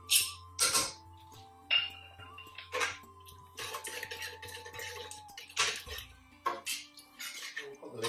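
A metal spoon knocking sharply against a metal pressure cooker pot several times and scraping through thick curry sauce as it stirs in tomato puree, over soft background music.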